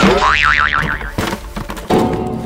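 Cartoon comedy sound effect: a falling glide that turns into a wobbling spring-like boing for about half a second. A few knocks follow, then a sharp thump just before the end.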